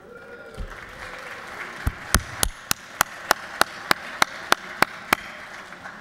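Legislators applauding a birthday greeting. A spread of clapping rises under a second in, and one clapper's claps stand out sharp and evenly spaced, about three a second, for roughly three seconds.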